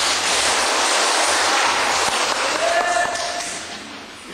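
Audience applauding: it starts suddenly, holds steady for about three seconds, then dies away.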